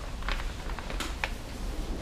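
Hands handling a waterproof Ortlieb handlebar bag and its straps: light rustling of the coated fabric with a few sharp clicks.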